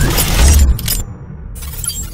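Intro logo-reveal sound effects: a loud crash like shattering glass with a deep bass hit about half a second in, cutting off suddenly just before one second, then a short burst of high hiss near the end.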